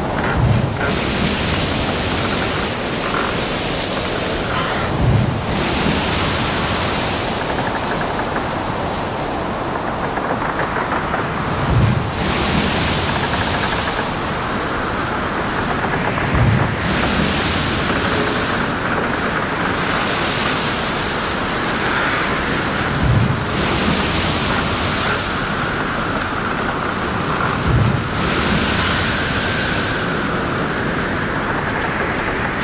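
Steady rushing noise with a low thump and a swell of hiss about every five to seven seconds.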